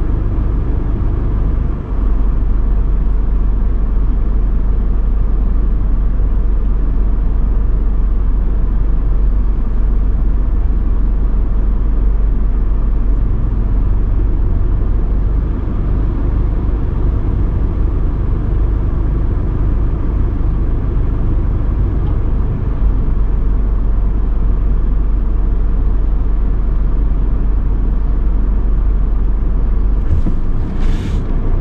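Steady low rumble of a car idling while stopped, heard from inside the cabin.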